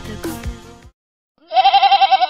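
Electronic intro music with a beat ends within the first second. After a brief silence, a goat bleats once near the end: a loud, quavering call about a second long.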